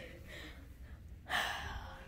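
A person's short, breathy intake of breath, like a gasp, about a second and a half in, after a moment of faint hiss.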